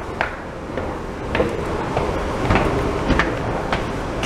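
Footsteps going down stairs, a sharp step about every half second, over the low rumble of a handheld camera being moved.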